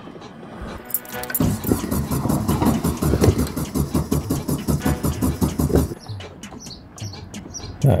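Air-cooled flat-four engine of a 1970s VW Beetle cranking on the starter motor with an even pulsing rhythm, starting about a second and a half in. It does not catch and stops after about four and a half seconds, leaving a few clicks. The owner suspects it has run out of fuel.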